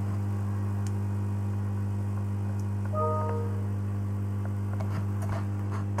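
Steady electrical mains hum, with a short electronic beep of a few pitches about three seconds in.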